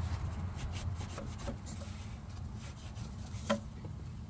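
A shop rag rubbing against the engine's thermostat-housing mating surface as it is wiped clean, with a few light clicks and a sharper tick a little before the end, over a faint low hum.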